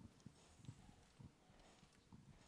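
Near silence, with faint, low footstep thuds about twice a second on the hall floor.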